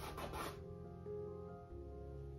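A brief dry rub against the painted canvas in the first half second, over soft background music with long held notes.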